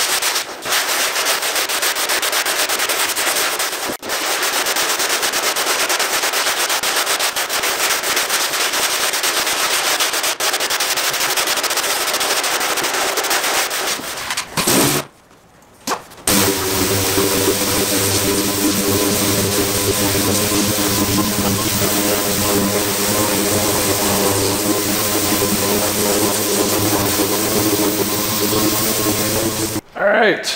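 Hand block sanding of body filler on a steel trunk lid: coarse sandpaper on a long sanding block rasping in fast back-and-forth strokes. The sanding stops about halfway through, and after a brief silence a steady machine hum runs on.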